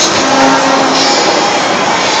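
Loud, dense street-parade din from slow-moving trucks and the crowd, with one pitched tone held for most of the first second.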